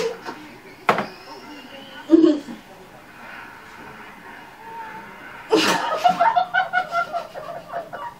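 A young woman bursting into laughter about halfway through: a sudden explosive snort, then a run of quick, even ha-ha pulses, muffled behind a hand over the mouth. Earlier there is a sharp click and a short thump.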